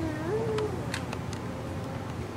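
A baby's drawn-out vocal cry, trailing off with one rise and fall in pitch in the first half-second, followed by a few faint clicks.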